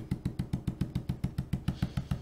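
Stencil brush stippling paint through a plaid stencil onto a wooden sign: a rapid, even run of dull taps, about ten a second.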